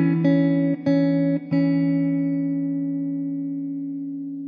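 Background guitar music: a few plucked notes, the last left ringing and slowly fading.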